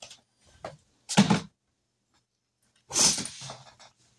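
Handling sounds as a small item is put away: a sharp knock about a second in, then a short scraping rustle near three seconds that dies away.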